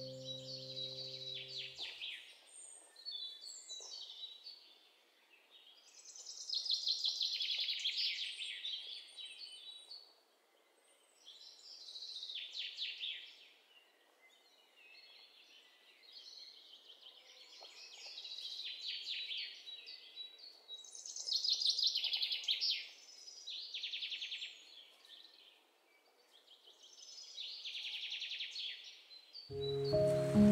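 Bird song: a series of high, rapidly trilled phrases, each a second or two long with short pauses between. Background music fades out about two seconds in and comes back at the very end.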